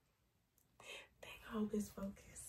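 A quiet room, then about a second in a person whispers briefly, followed by two short, low murmured syllables.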